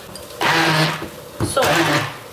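Black hand-held immersion blender run in two short bursts in a bowl of chickpeas, its motor hum mixed with the rough noise of the chickpeas being chopped, one burst about half a second in and another near the end.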